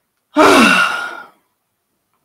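A woman's loud, voiced sigh, about a second long, falling in pitch.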